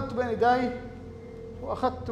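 A man's voice reading a line aloud, in two short phrases, over a steady low background tone.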